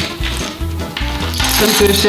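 Small hard letter tiles clicking and clinking together as a hand rummages and draws them inside a cloth bag, over background music with a steady beat.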